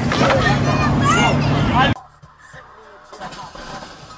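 People screaming and shouting over a Ford Mustang's engine running, cut off suddenly about two seconds in; a much quieter street sound with faint voices follows.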